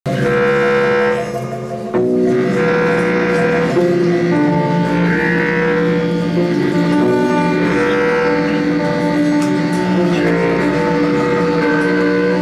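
Free-improvised music from a small ensemble: several sustained droning tones overlap and shift pitch. The sound drops away briefly just after a second in, then comes back abruptly at about two seconds.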